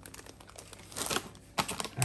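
Clear zip-lock plastic bags of vegetables crinkling as they are handled, with a louder rustle about a second in and again near the end.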